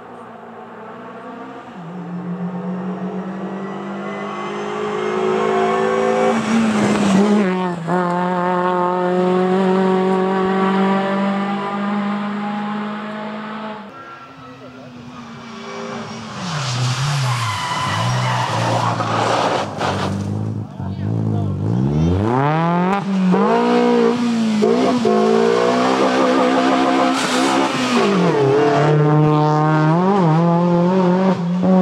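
Kia Picanto rally car driven hard on a tarmac stage: the engine note climbs as it approaches at high revs and holds steady with a gear change about seven seconds in. After a cut, the revs drop in steps as it brakes and downshifts into a hairpin, then rise in repeated sweeps as it accelerates away up through the gears.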